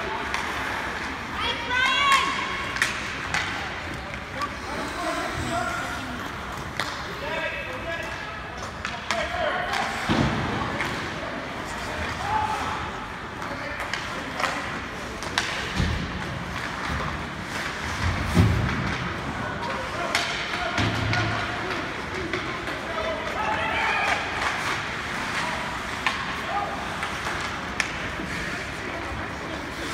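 Ice hockey game sounds in a rink: voices calling and shouting at intervals over a steady din, with sharp clacks of sticks and puck and occasional thuds against the boards.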